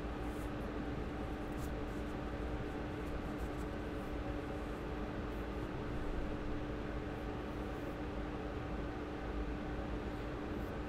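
Steady background hiss with a constant low hum: room tone picked up by the microphone.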